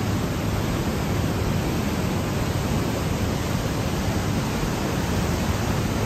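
Steady rushing of water echoing in a narrow rock gorge: an even, unbroken noise of a mountain torrent.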